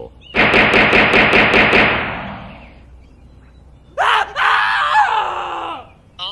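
A rapid burst of gunfire, about seven shots, with a ringing tail that dies away by about three seconds in. About four seconds in, a voice cries out in a long, wavering groan.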